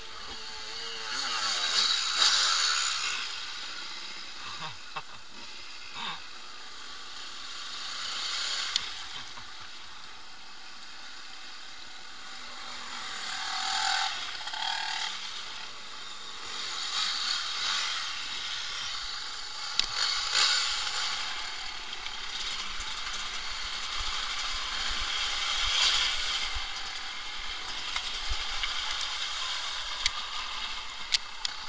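Off-road dirt bikes riding through a shallow river ford: engine noise mixed with splashing water, swelling and fading over and over as the bikes pass through.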